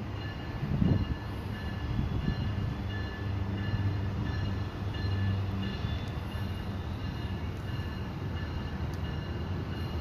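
Brightline passenger train's Siemens Charger diesel-electric locomotive running as it pulls slowly toward the listener: a steady low engine drone, swelling briefly about a second in, with a faint repeated ringing over it.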